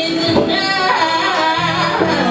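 A woman singing a wavering, melismatic vocal line into a microphone over a live jazz band's accompaniment; a low note comes in underneath near the end.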